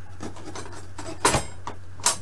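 Light handling noises of metal strips being pushed into a potato in a plastic tub, with one sharp knock a little past halfway through, over a steady low hum.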